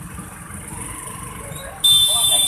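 Motorcycle and bus engines idling and creeping in stop-and-go traffic, a steady low rumble with voices around it. Near the end a loud, high-pitched electric vehicle horn sounds suddenly.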